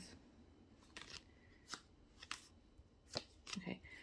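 Tarot cards being handled: a few faint, short slides and taps as the cards are moved in the hand.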